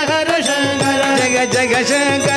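Male voices singing a Carnatic devotional song (bhajan), accompanied by mridangam strokes and a steady harmonium.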